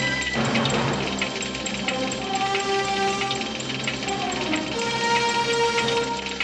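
Film soundtrack music with long held notes, over a steady fast ticking.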